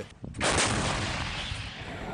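A single heavy blast of battlefield fire, sudden about half a second in, then a long fading rumble.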